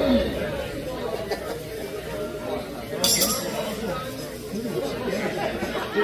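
Background chatter of a bar crowd, many voices talking at once, with a brief high clink about three seconds in.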